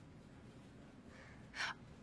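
Quiet room tone, then a woman's short, sharp gasp of breath about one and a half seconds in, a sceptical reaction.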